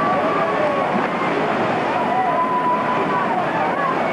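Rushing, churning water of a river-rapids ride channel, with people's voices calling out over it.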